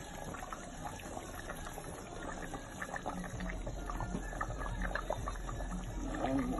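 A steel pot of meat stew simmering on the stove: soft, irregular bubbling and popping of the broth.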